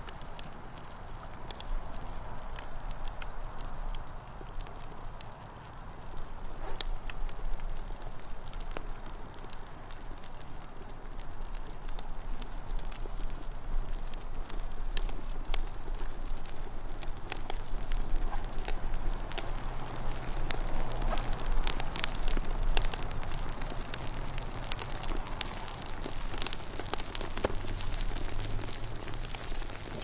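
Redwood model house burning in open flame, the wood crackling and popping. The crackling grows louder and denser after the first few seconds.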